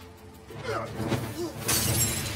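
TV drama soundtrack: music with a loud crash near the end.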